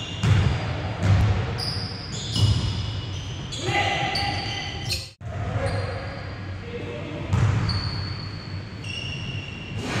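Basketball game on a hardwood gym floor: the ball bouncing, sneakers squeaking and players' voices, all echoing in a large hall. The sound cuts out for an instant a little past halfway.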